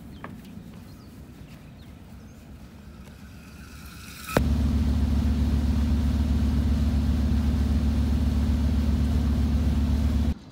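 Faint background for about four seconds, then a sharp click and a boat's engine running steadily under way, a deep, even drone heard from on deck.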